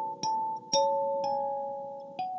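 Lingting K17P kalimba (17-key thumb piano) playing a slow Christmas carol melody: single plucked tines about half a second apart, each note ringing on and overlapping the next.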